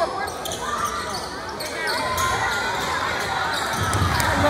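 Basketball bouncing on a hardwood gym floor during live play, with spectators' voices in the echoing gym.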